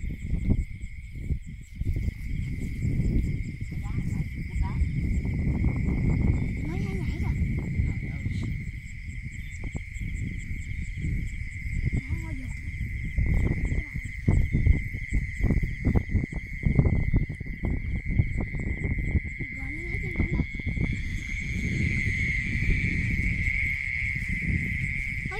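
A steady, high-pitched chirring of night insects throughout, over low rustling and thudding of footsteps through wet grass and mud.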